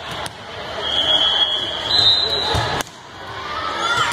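Referee's whistle blown for the serve: a steady high tone held for about a second and a half that steps up in pitch before stopping, over spectators' voices in a gym hall. A ball thud follows just before the end.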